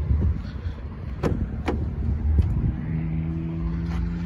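The rear door of an Audi S1 being unlatched and swung open: two sharp clicks about half a second apart, over a low rumble on the microphone. A steady low hum starts near the end.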